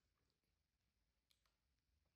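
Near silence: faint room tone with a few very faint clicks, the clearest about a second and a half in.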